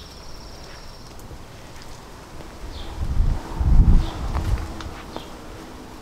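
Outdoor garden ambience with a few short, high bird chirps scattered through it. About three seconds in comes a low rumble on the microphone, the loudest sound, lasting about a second and a half.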